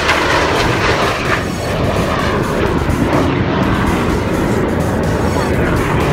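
A display jet flying past, its engine noise steady and continuous, with music mixed in.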